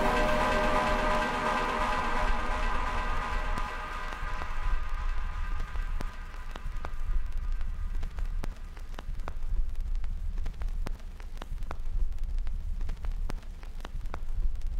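Electronic interlude sound: held synth tones fade out over the first few seconds, leaving a steady low drone under scattered, irregular crackling clicks.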